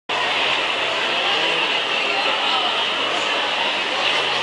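Steady shopping-mall din: a constant hiss-like wash of background noise with faint voices of people nearby mixed in.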